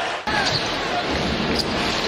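Arena crowd noise from a televised NBA basketball game, cut abruptly about a quarter second in to a different game's crowd.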